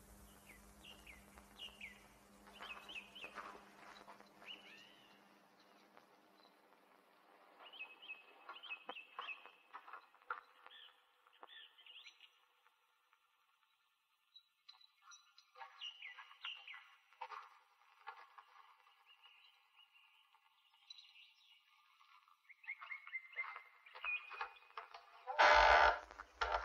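Birds chirping in short, scattered bursts of quick, rising and falling notes, faint throughout. Just before the end a louder sharp knock or thump cuts in.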